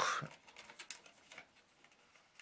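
A few faint, scattered clicks and light taps of a tape measure being handled against the top of a boombox case.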